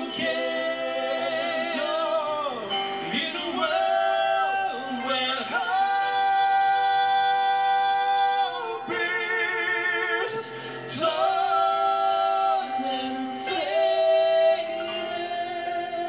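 Two male voices singing a gospel ballad over a Yamaha MO8 keyboard accompaniment, with long held notes that waver with vibrato and a few sliding runs between them.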